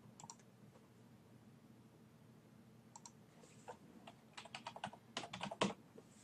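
Faint computer keyboard typing: a few isolated keystrokes, then a quick run of keystrokes from about four seconds in as a word is typed out.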